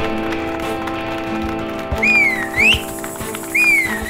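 Background score with sustained held chords. About halfway through, a whistled figure comes in twice: each time a tone dips down and then swoops sharply back up.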